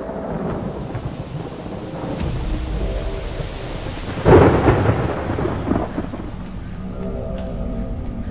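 Steady rain falling, with a loud clap of thunder about four seconds in that rumbles and fades over the next second or two. Faint held tones of a music score sit underneath.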